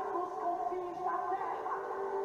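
Gospel song (louvor): a voice sings a melody with held, wavering notes over instrumental accompaniment.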